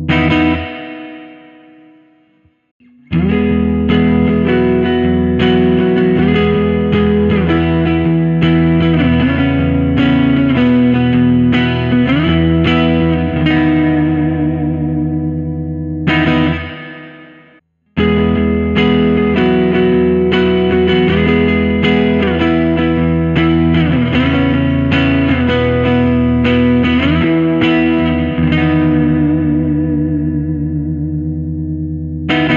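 1994 Made-in-Japan Fender Jazzmaster electric guitar with Pure Vintage pickups, strummed chords played direct through a Fender Twin Reverb amp simulation. A chord rings and fades out, then the same strummed chord passage is played twice. Each pass ends on a ringing chord, and there is a second of silence between them about seventeen seconds in.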